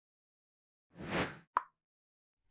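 Outro animation sound effect: a short swelling whoosh about a second in, followed by a single quick pop.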